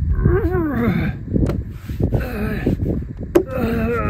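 A man groaning and grunting with effort as he strains to push off a wheelbarrow that has him pinned to the ground, with scuffling and a sharp knock late on.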